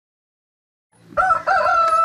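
After about a second of silence, a rooster crowing: a couple of short wavering notes running into one long held note.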